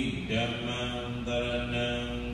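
A man's voice chanting a Buddhist recitation, held on a nearly level pitch in short phrases with brief breaks between them.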